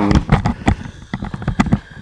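Microphone handling noise: a badly fitted mic rubbing and knocking, giving irregular crackles and sharp clicks, several a second.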